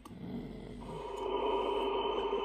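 A hiss that swells into a steady, held tone about a second in, growing louder: a sound from the LEGO stop-motion film's soundtrack playing back on the screen.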